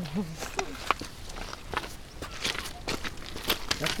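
Footsteps crunching on a gravel and stone riverbank, an uneven run of sharp crunches about two or three a second.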